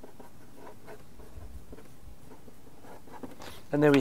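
Non-permanent felt-tip marker writing on paper: a run of short, faint scratching strokes as a line of handwriting is put down.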